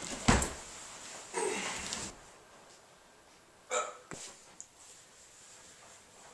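A sudden thump as one man lunges at another in a scuffle, followed about a second later by a short grunting vocal sound. Then it goes quiet apart from a couple of faint clicks near the middle.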